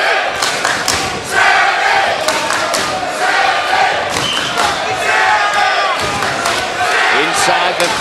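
Arena boxing crowd shouting, cheering and chanting in support of a fighter, with scattered sharp thuds among the noise.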